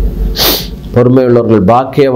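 A man speaking Tamil, with a short, sharp hissing breath noise about half a second in, during a pause before his speech resumes about a second in.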